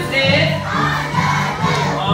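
A crowd of young children shouting together.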